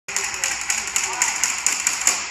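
Speed bag punched hard and fast, rapping against its rebound board in a steady rhythm of about four loud knocks a second, over a constant hiss.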